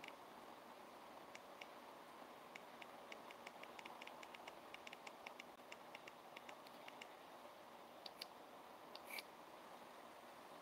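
Faint, rapid clicking of a Geekvape Aegis Legend box mod's wattage adjustment buttons pressed over and over, several presses a second, thinning out after about seven seconds to a few last clicks near the end.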